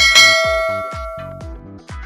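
A bright bell chime, the notification-bell sound effect of an animated subscribe button, rings once at the start and fades out over about a second and a half. Background music with a steady beat plays under it.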